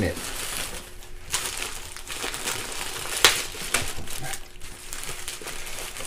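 Clear plastic packaging crinkling and crackling irregularly as a bagged puffy jacket is handled and lifted out of a cardboard box, with two sharper crackles, about a second in and about three seconds in.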